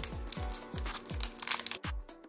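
Background music with a steady beat, over the crinkling and tearing of a foil trading-card pack wrapper being opened; the crackles are loudest about a second and a half in.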